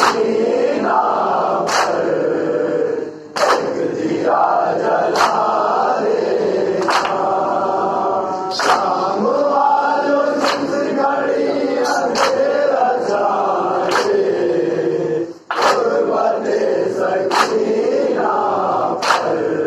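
A group of men chanting a noha, a Shia mourning lament, while striking their chests together in matam: a sharp slap about every 1.7 seconds in time with the chant. The voices break off briefly twice.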